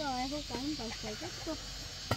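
Chickens clucking in short, pitched calls.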